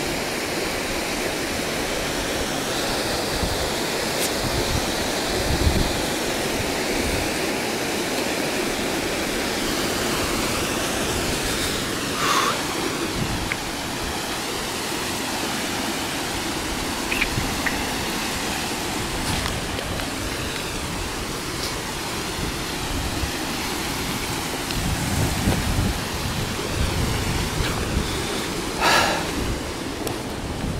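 A steady rush of water with the sound of surf and of water running over rock. It is broken by occasional low bumps, several of them close together near the end.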